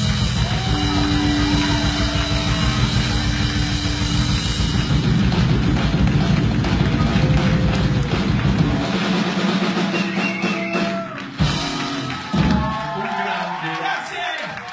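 A rock band playing live, with drum kit, bass and guitars. A note is held for a few seconds early on. The full sound drops away about nine seconds in, and two sharp hits follow shortly after.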